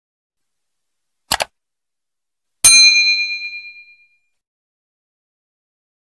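Subscribe-button animation sound effect: a short double click, then a bright bell ding, the loudest sound, that rings out over about a second and a half.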